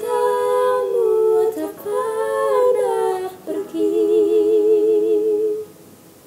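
Two female voices humming the song's closing phrase without words in two-part harmony: three held phrases, the last one with vibrato, ending about five and a half seconds in.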